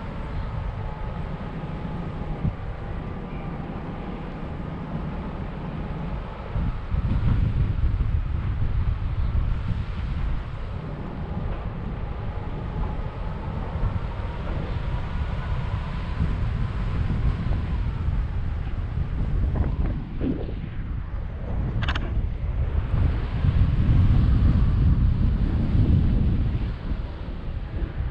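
Airflow buffeting the action camera's microphone during a tandem paraglider flight. It is a steady low rumble that grows louder in gusts, once about seven seconds in and again near the end. A faint steady whistle runs through the first half.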